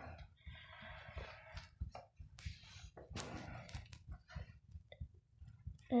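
Graphite pencil scratching across paper as straight lines are drawn: two longer faint strokes in the first few seconds, with small ticks and taps of the pencil.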